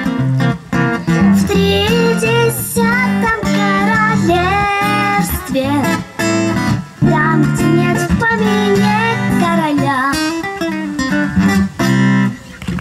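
A girl sings a Russian bard song into a microphone, accompanied by a strummed acoustic guitar.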